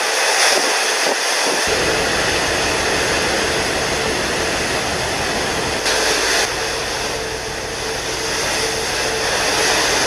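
Steady roar of engine and wind noise with a faint steady hum; a deeper low rumble comes in about two seconds in and changes again about six seconds in.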